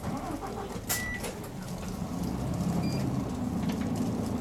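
A city bus's diesel engine heard from inside the cabin, pulling forward in slow traffic, its running sound growing louder over the last couple of seconds. About a second in there is a sharp click with a short high beep.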